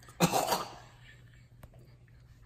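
A man gives one short, harsh throat-clearing cough about a quarter second in, his reaction to the taste of a foul peanut butter spread in his mouth.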